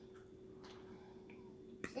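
Faint eating sounds: soft mouth clicks while chewing, with a sharper lip smack near the end.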